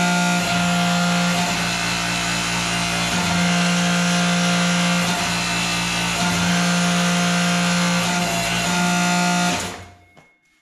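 Electric motor and hydraulic pump of a homemade hydraulic forging press running with a loud, steady hum while the ram moves; it shuts off shortly before the end.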